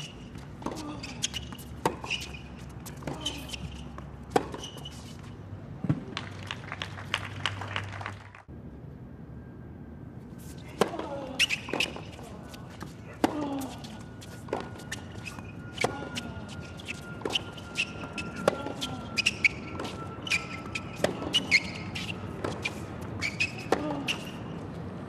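Tennis rallies on a hard court: the ball struck by racquets and bouncing, in an irregular run of sharp hits, with a short break about eight seconds in between two points.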